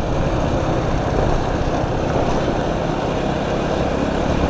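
Honda Biz's small single-cylinder four-stroke engine running steadily while the bike rides along, mostly covered by a steady rush of wind over the camera microphone.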